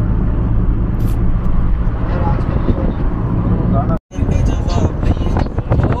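Car driving along a road, heard from inside the cabin: a steady low rumble of engine and tyres. About four seconds in the sound cuts out for an instant, then returns rougher, with wind buffeting the microphone.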